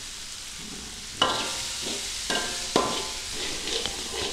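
Vegetables sizzling in a metal wok while a steel spoon stirs and scrapes the pan. Three ringing clanks of spoon on metal come from about a second in.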